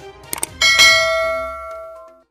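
Subscribe-button sound effect: two quick clicks, then a bright bell chime about half a second in that rings on and fades away over about a second and a half.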